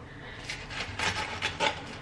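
A spoon or utensil scraping and stirring in a bowl while vegetable sandwich filling is mixed, with a few soft scrapes spaced about half a second apart.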